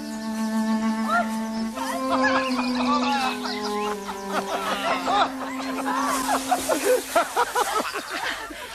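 Slow soundtrack music of long held notes. From about five seconds in, people laugh and shriek over it, with the rustle of bodies tumbling in dry hay.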